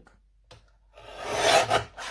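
A paper trimmer's hinged guillotine arm brought down through a strip of cardstock: a rasping cut that swells about a second in and is over in under a second.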